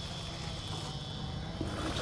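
Quiet outdoor background: a steady low rumble, like distant engine noise, under a faint, even high-pitched insect hum.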